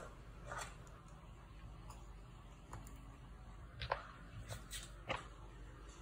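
A few soft, scattered clicks and taps from handling battery charger crocodile clamps and cables, the sharpest about four and five seconds in, over a faint steady low hum.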